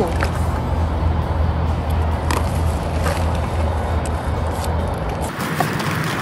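A plastic garbage bag rustling and crinkling as hands rummage through it, with a few light clicks. Underneath runs a steady low hum that cuts off shortly before the end.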